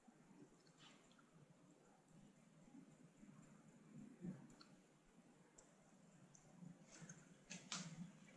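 Near silence, with a few faint soft clicks from the lips and a thin lip brush as liquid lipstick is brushed on; the clearest clicks come near the end.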